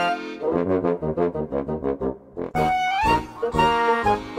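Instrumental background music with a brass-sounding lead: a jaunty run of quick, short notes, then a held note that slides upward about three seconds in.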